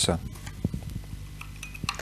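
A small folding camping gas stove being handled and folded up: a few light metallic clicks and clinks from its steel pot supports, with a short metallic ring a little past the middle.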